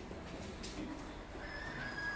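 A whistle sounds a steady high note, starting about one and a half seconds in and held over faint room noise.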